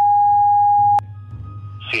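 A censor bleep: one steady, loud electronic tone blanking out a spoken street address. It stops abruptly about a second in, leaving a low hum, and a man's voice answers briefly near the end.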